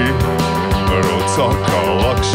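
Live rock band playing with distorted electric guitars, bass and drums, the drums striking steadily, with a male singer's voice over the top in the second half.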